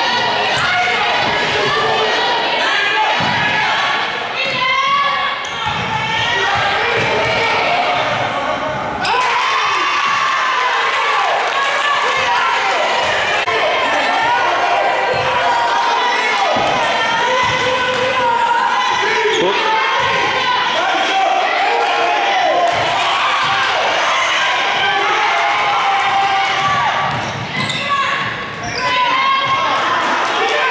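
A basketball being dribbled and bounced on a wooden gym floor, with short repeated thumps, under steady shouting and calling from players and spectators in a large, echoing gym.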